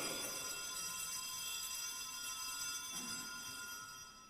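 Altar bells ringing for the elevation of the consecrated host, several high metallic tones that fade away.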